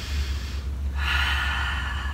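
A woman taking a deep breath: a faint breath first, then a louder, longer breath out starting about a second in, over a steady low hum.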